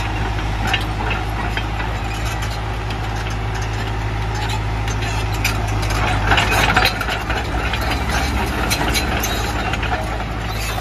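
Diesel engine of a JCB JS81 tracked excavator idling with a steady low hum. Road traffic noise swells briefly about six to seven seconds in.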